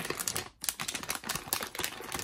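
Foil blind bag being torn open and crinkled by hand: a dense run of crackles with a brief pause about half a second in.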